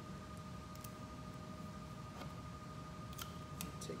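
Quiet room tone with a steady faint electrical hum, and a few faint clicks and crinkles of clear tape being pressed onto a rolled paper tube, a couple of them near the end.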